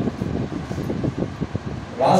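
Low, irregular rumble of moving air and handling noise on a handheld microphone held close to the mouth, in a pause between sentences.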